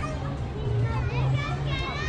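Visitors' voices around the camera, including children's high-pitched voices calling out, over a steady low hum.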